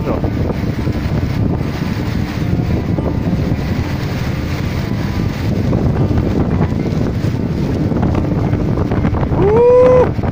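Steady roar of the Grand Cascade de Gavarnie, a waterfall of about 423 m, mixed with wind and spray buffeting the phone's microphone at the foot of the falls. Near the end a man's voice rises in a short call.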